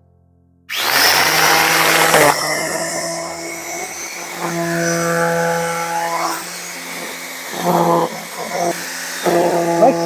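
Electric angle grinder rigged as a grass trimmer with a fibre-wire cutting line, switched on about a second in: it spins up with a rising whine, loudest at the start, then keeps running steadily while it cuts grass.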